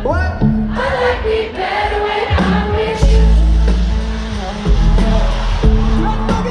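Live pop song played loud through a festival PA, with singing over the band. A heavy bass comes in about three seconds in.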